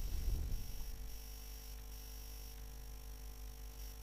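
Quiet room tone: a faint steady electrical hum and hiss, with a low rumble in the first second that dies away.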